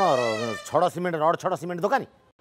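A person's high, whiny voice: one long cry sliding down in pitch, then a quick run of short sing-song syllables, each rising and falling.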